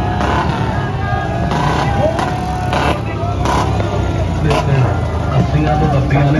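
Motorcycle and vehicle engines running as a procession drives past, with a crowd's voices raised over them and several short, sharp noises in the first few seconds.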